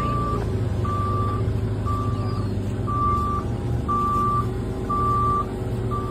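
A back-up alarm beeping steadily about once a second, each beep about half a second long, over the low, steady running of a diesel-type engine.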